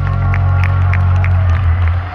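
Male a cappella vocal group holding the final chord of a song through a PA, a deep steady bass note under wavering higher held harmony, all cutting off near the end.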